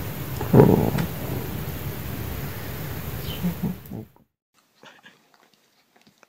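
A domestic cat purring steadily close up, a low pulsing rumble with a brief louder sound about half a second in. The purring stops abruptly about four seconds in, and only faint quiet sounds follow.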